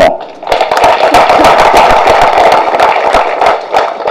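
Audience applauding: a dense run of hand claps that starts about half a second in and dies away near the end.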